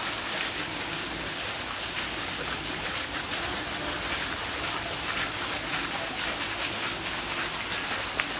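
Running water: a steady, even rushing hiss.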